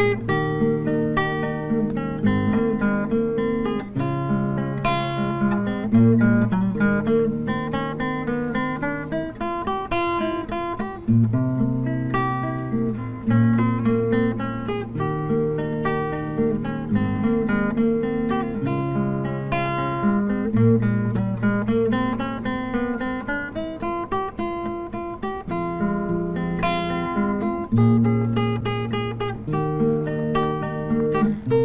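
Solo nylon-string classical guitar played fingerstyle: picked arpeggios ringing over held bass notes that change every second or two.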